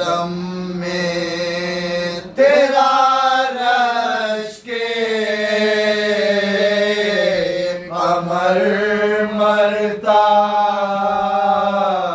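Soz khwani, unaccompanied: a male lead voice sings long, drawn-out mournful phrases that glide between held notes, pausing briefly for breath, while a low steady note is held underneath by the supporting voices (humnawa).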